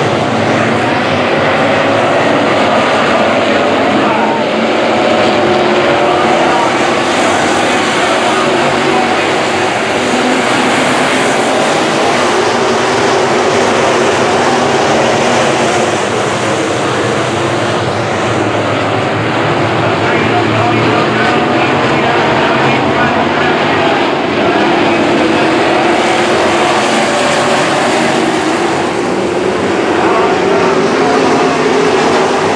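A pack of dirt-track sport modified race cars running at racing speed: loud, continuous engine noise that swells and fades as the field comes past and goes round the oval.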